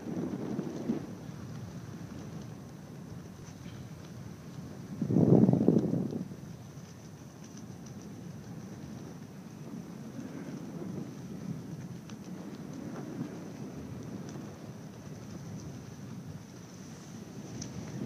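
Wind buffeting a phone's microphone high up on a parasail: a steady low rush with one louder gust about five seconds in.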